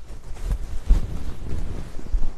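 Handling noise on the microphone: low rumbling and rustling, with soft thuds about half a second, one second and one and a half seconds in, as the silk saree fabric is handled and the camera moves.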